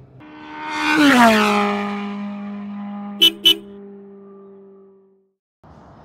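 Intro music sting: a swelling swoosh peaks about a second in and settles into a deep held note that slides down a little and fades away over the next few seconds. Two short sharp beeps come close together about three seconds in.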